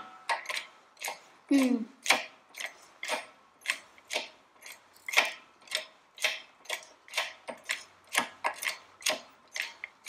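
Regular mechanical clicking, about two sharp clicks a second, steady throughout.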